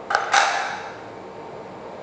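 Spring-loaded disc of a 316 stainless steel in-line check valve being pushed in with a pen and springing back against its metal-to-metal seat. A light click, then a short metallic creak near the start.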